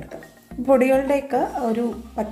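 A voice speaking, over a wooden spatula stirring and scraping fried potato pieces around a nonstick pan.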